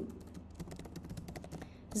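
Computer keyboard typing: a quick, irregular run of light keystroke clicks.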